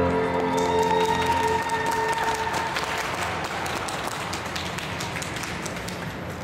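The skating program's music ends on a held chord that fades out over the first two seconds or so, as audience applause takes over and carries on, slowly getting quieter.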